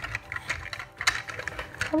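Plastic Grossery Gang Street Sweeper toy pushed along a tabletop, its geared sweeper brushes and wheels clicking and clattering irregularly, several clicks a second, as it scoops small figures inside.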